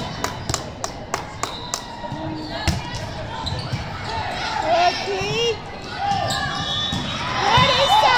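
Volleyballs being struck and hitting the hard gym floor, with a run of sharp hits in the first two seconds and more through the rally, echoing in a large hall. Players' voices call out throughout and grow louder near the end.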